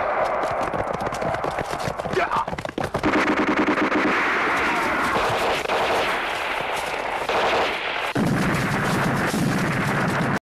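Battle sound effects: rapid, dense gunfire with rapid repeated shots. About eight seconds in, it gives way to a heavier, deeper din.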